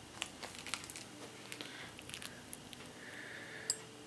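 Faint, scattered clicks and light rustling from handling a metal dog tag on a ball chain, with one sharper click near the end.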